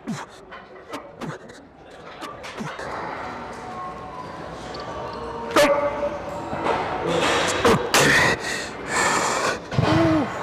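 A man grunting and straining through the last reps of a heavy dumbbell press, the grunts getting louder in the second half.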